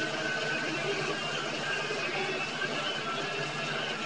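A steady low hum fills the room, with faint, short, indistinct tones above it and no clear voice.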